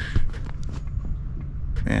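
Low, uneven rumble of wind buffeting the camera microphone, with a few small clicks from the camera being handled.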